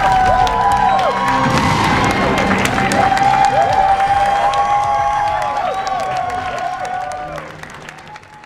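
Screening audience cheering, whooping and clapping over music, fading out near the end.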